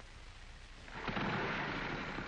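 A motor vehicle engine starting up about a second in and running on loudly with a rough, rumbling rush.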